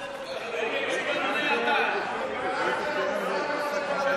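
Many men's voices talking over one another at once in a large chamber: the chatter and heckling of members of parliament, with no single voice clear.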